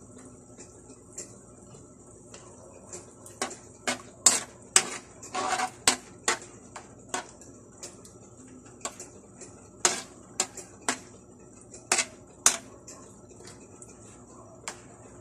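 A metal spoon clinking and scraping against an aluminium wok as pork in shrimp paste sauce is stirred: a run of sharp, irregular clinks, loudest and busiest in the first half, with one brief scrape.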